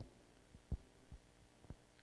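Near silence: room tone with a few faint, brief low thumps.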